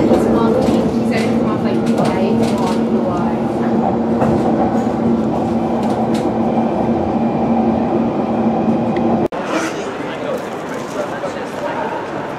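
Passenger train running at speed, heard from inside the carriage: a steady hum over a continuous rumble. About nine seconds in it cuts off abruptly to quieter street noise.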